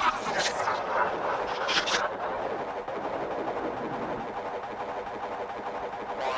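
1990s ambient breakbeat electronic track in a sparse passage: a steady, dense wash of noisy texture with no clear melody. A couple of sharp cymbal-like hits come just before two seconds in, after which the bright top end falls away.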